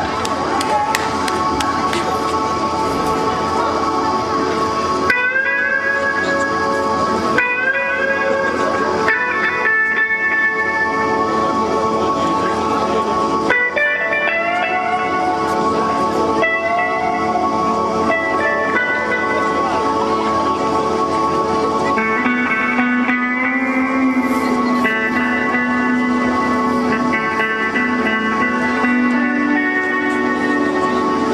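Instrumental opening of a live rock song: an electric guitar plays a slow melody of sustained notes that slide up into pitch, changing every couple of seconds, over a steadily held tone. A lower, wavering melodic line joins about three-quarters of the way through.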